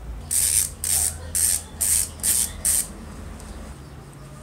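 Six short, even bursts of hiss, about two a second, stopping a little before the end.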